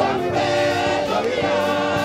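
Gospel music sung by a group of voices, with long held notes.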